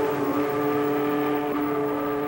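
Steamboat steam whistle blowing one long, steady chord built on two main tones.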